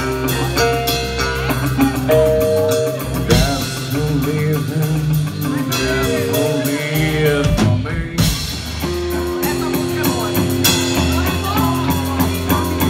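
Live band playing an instrumental passage with drum kit, electric bass and electric guitars, while a harmonica cupped to a handheld microphone plays long, bending melody notes over it.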